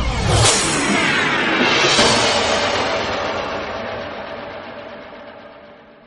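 Intro logo sting made of sound effects: two whooshing sweeps, about half a second and two seconds in, each trailing off into falling tones, the whole fading out slowly.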